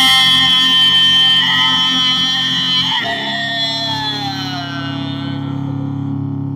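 Instrumental passage of a song: a held electric guitar note rings over a steady low drone. About three seconds in a new note starts and slides slowly down in pitch as it fades.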